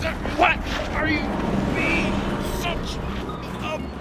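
Wordless strained cries and grunts from a struggle, with a wavering high cry about halfway through, over the steady rumble of road traffic passing.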